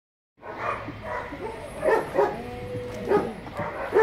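A dog vocalising with a string of short yips and longer sliding whines, starting about half a second in.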